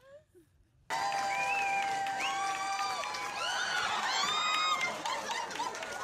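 Crowd cheering and clapping with high whoops and shouts, starting suddenly about a second in after near quiet.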